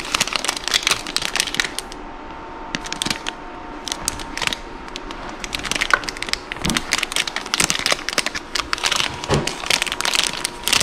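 Clear plastic wrap on a plastic measuring cup crinkling and crackling in the hand as the cup is picked up and turned over, in irregular bursts of sharp crackles.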